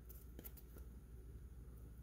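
Near silence, with a few faint ticks as a trading card is turned over in the hands.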